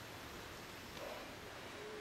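Faint outdoor ambience between spoken remarks: a low, steady hiss with one soft, brief sound about a second in.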